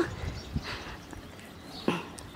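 Faint sounds of tiger and lion cubs feeding close by, with a brief sound about half a second in and another short one near the end.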